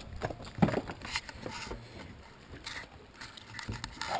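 Scattered knocks and taps inside a small fishing boat, irregular and a second or so apart.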